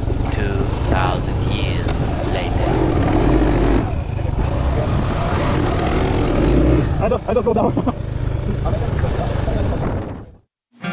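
Indistinct voices over a steady low rumble, with snatches of speech near the start and again about seven seconds in.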